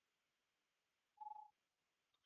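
Near silence, broken about a second in by a single short electronic beep at one steady pitch.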